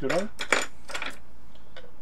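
Several short, sharp clicks and light taps from hands handling the hard plastic case of a 12 V jump starter pack on a workbench.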